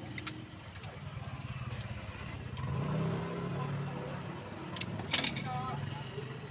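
Steady low rumble of a motor vehicle engine in the background, growing louder around the middle as it passes, with faint background voices. A few sharp clicks cut through, the loudest about five seconds in.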